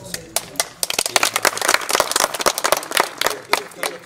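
Hand clapping: a run of quick, irregular claps lasting about three and a half seconds, with voices mixed in.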